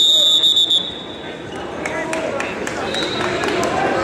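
A high, steady signal tone sounds for just under a second, marking the end of a wrestling period. Softer voices from the crowd follow, with scattered sharp clicks.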